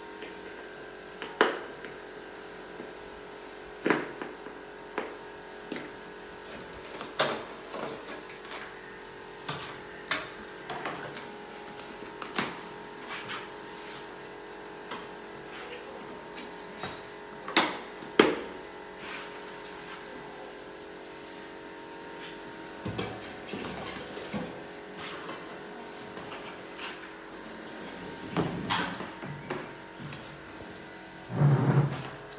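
Scattered clicks and knocks of plastic and metal parts as a split air-conditioner indoor unit and its mounting plate and pipes are handled, over a steady background hum.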